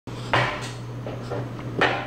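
Handling noise as the camera is picked up and set in place: two short knocks or rustles, about a third of a second in and near the end, with fainter rustling between, over a steady low electrical hum.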